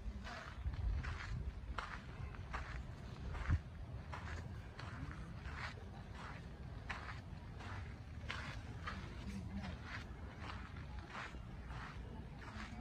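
Footsteps of a person walking at an easy pace, about three steps every two seconds.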